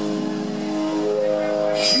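Live blues-rock band holding sustained notes between sung lines, with a short hiss just before the next line begins.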